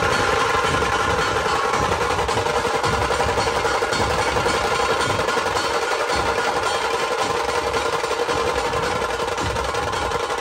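Dhol-tasha ensemble playing loud: many tasha drums struck with thin sticks in a steady, rapid roll, with the deep beats of big dhol drums underneath.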